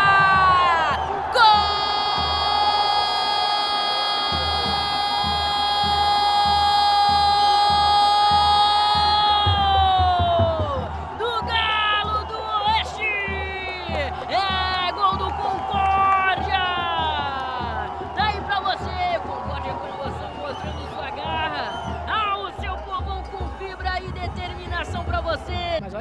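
A Portuguese-language football commentator's long drawn-out goal cry, one held shout of about eight seconds that drops in pitch and breaks off near the ten-second mark. Excited rapid commentary follows over crowd noise.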